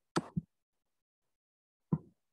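Two brief soft knocks, the first a quick double, with dead silence between them.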